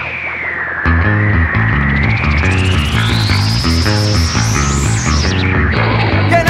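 Instrumental break of a punk rock song: electric guitar and bass under a sweeping effect that dips, then climbs steadily for about four seconds and drops back near the end. The full band comes back in about a second in.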